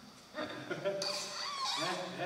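People laughing, with short voiced bursts that glide in pitch, starting about a third of a second in after a brief hush.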